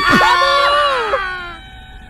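Several people screaming at once, loud for about a second, then fading away.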